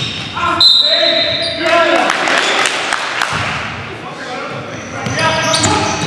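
Live basketball game sound in a gym: sneakers squeal on the hardwood court in short high-pitched squeaks, the loudest about a second in, with the ball bouncing and echoing in the hall.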